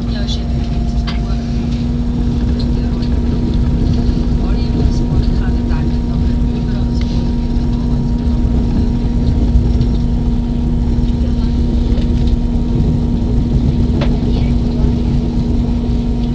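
Passenger train running, heard from inside the carriage: a steady rumble with a constant low hum.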